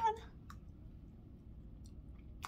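A woman's voice trails off, then a single short, sharp click comes about half a second in, over quiet room tone.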